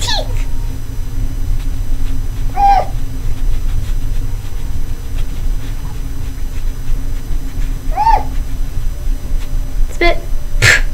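Two short, high, animal-like cries about five seconds apart, each rising and falling in pitch, over a steady low hum.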